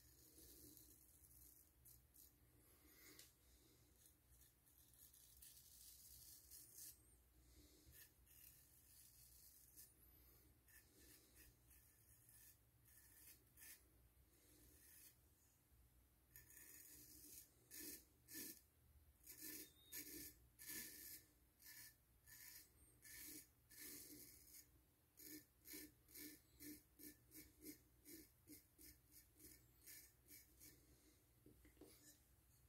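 Straight razor scraping through lathered stubble on the second shaving pass: faint, scattered strokes at first, then from about halfway a quicker run of short, crisp scrapes, about two to three a second near the end.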